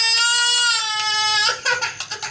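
A young child crying: one long wail held on a slowly falling pitch that breaks off about a second and a half in, followed by a few short knocks.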